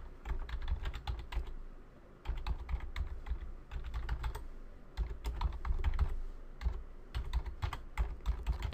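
Typing on a computer keyboard: keys clicking in quick, irregular runs, with a short pause about two seconds in.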